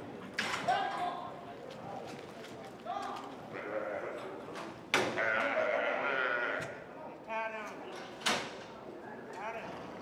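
A roped calf bleating while it is thrown and tied, mixed with people shouting, and a few sharp knocks: the loudest comes about halfway through.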